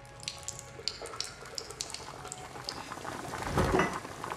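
A urine stream splashing into a urinal, with scattered drip-like splashes and a louder rush near the end.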